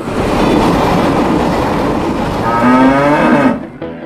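A diesel freight train rolling past with a steady rumble and rattle. Near the end a cow moos once over it, a single drawn-out call lasting about a second.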